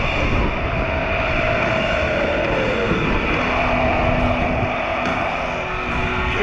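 Wind buffeting the microphone of a GoPro-style action camera while riding a bicycle along a road, a steady rumbling noise. A faint tone slides slowly down in pitch in the first half, and a steady low hum follows.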